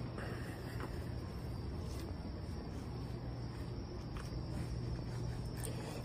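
Steady background hum and hiss with no distinct event, with a faint, even high-pitched tone above it.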